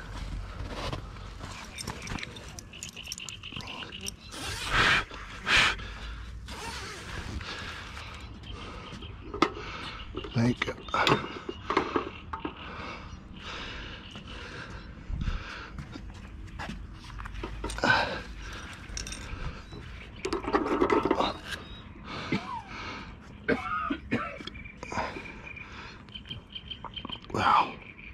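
Irregular scrapes, knocks and footsteps on a wooden deck as a carp is hoisted in a mesh weigh sling onto a dial scale hung from a weigh tripod, with some heavy breathing from the lifting.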